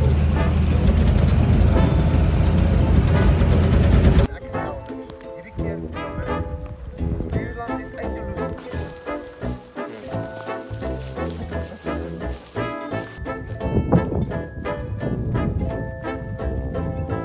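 A vehicle driving, with a loud low rumble and wind noise, for about the first four seconds. It cuts off suddenly into background instrumental music with short, distinct notes.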